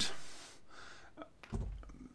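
A man's breath between spoken phrases, with a faint click about a second in and a low thump near the end.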